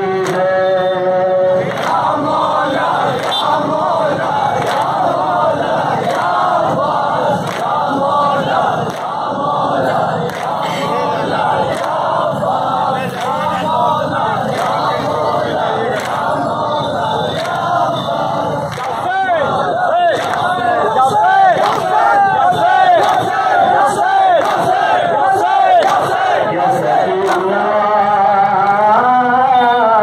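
A large crowd of Shia mourners chanting a lament in unison, with rhythmic matam, hands beating on chests, keeping the beat. The chanting swells louder in the last third.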